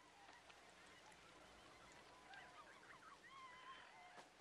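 Near silence, with faint distant calls wavering up and down in pitch in the second half.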